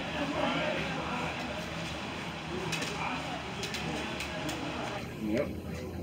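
Indistinct background voices and general room murmur, with no single clear sound standing out, and a short spoken 'yep' near the end.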